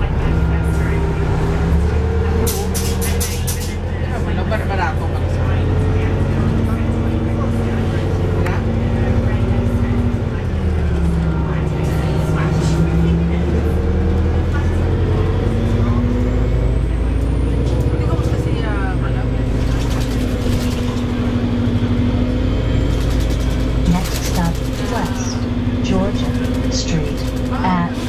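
City bus running, heard from inside the passenger cabin: a steady engine hum whose pitch steps up and down as the bus changes speed, over constant road noise.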